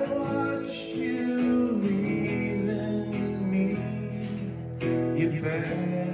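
Acoustic guitar strummed in a country-folk song, an instrumental stretch with no singing, changing chords twice.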